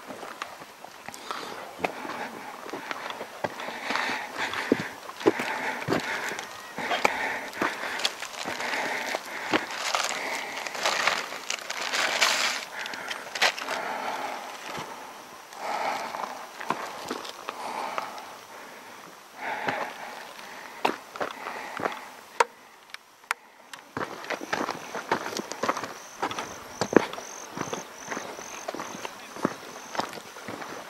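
Footsteps and scattered clicks and rustles on a dry dirt walking track through heath. From about four-fifths of the way through, an insect's high, evenly pulsing call sets in.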